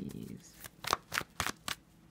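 A tarot deck being shuffled by hand: about five quick card slaps, roughly four a second, starting about half a second in.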